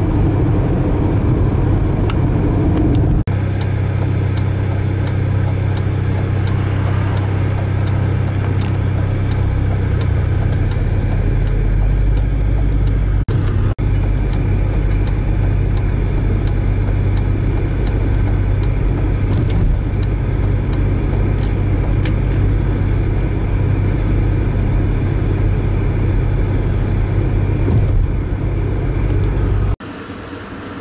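A car driving: a steady low engine and road drone with scattered small clicks. The sound changes abruptly a few times.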